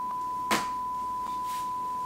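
Steady 1 kHz sine-wave test tone, the kind played over TV colour bars, holding one unchanging pitch throughout. There is a faint click about half a second in.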